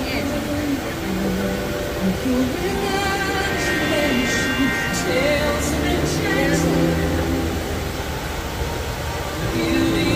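Orchestral show music from the park's outdoor loudspeakers, with held notes and a run of short, bright high sparkles in the middle, swelling into a louder low passage near the end.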